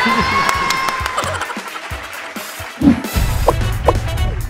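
Excited shouting and cheering, with one long held high cry, that trails off; about three seconds in, an edited music sting with a heavy bass beat and sharp hits starts.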